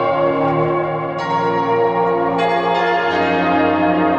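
Background music of sustained, bell-like chimes, with a new chord struck about a second in and again about halfway through.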